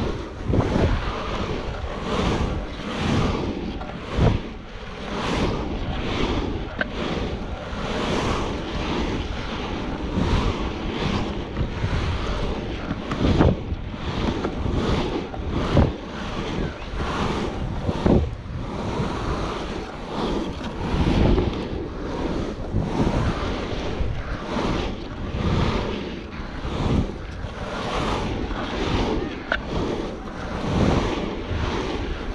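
Wind rushing over the camera's microphone as a longboard rolls downhill at speed, coming in uneven gusts, over the rumble of the wheels on asphalt.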